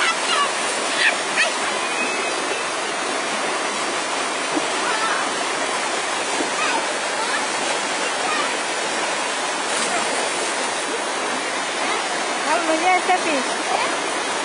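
Water rushing steadily down a rocky cascade into a river pool. Voices call out briefly near the start and again louder near the end.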